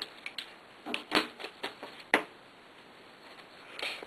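Sheets of computer paper being cut in half along a wooden ruler and handled: a few short, sharp paper rustles and clicks in the first two seconds, then quiet.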